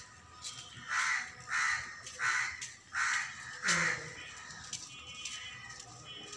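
A bird calling five times in quick succession, each call short and loud.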